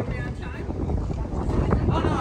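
Indistinct voices talking, with wind rumbling on the microphone.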